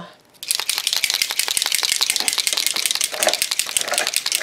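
Silver leafing paint pen shaken hard, starting about half a second in, with a fast, steady clicking rattle, to get the ink into its dry tip.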